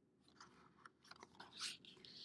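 Faint paper rustle and light clicks of a picture book's page being turned by hand, loudest about a second and a half in.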